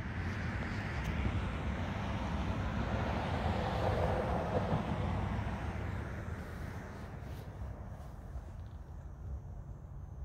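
A passing vehicle heard outdoors: an even rush of noise that swells to a peak about four seconds in and then fades, over a steady low background rumble.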